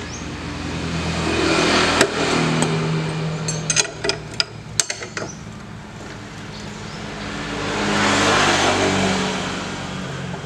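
Passing road traffic: a motor vehicle's engine noise swells up and fades twice, peaking about two seconds in and again near the end. Between them come a handful of sharp metallic clicks and clinks from a wrench working the scooter's front axle nut.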